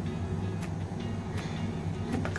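Spatula clicking against a frying pan about once a second as sliced onions are stirred in oil, over a steady low hum.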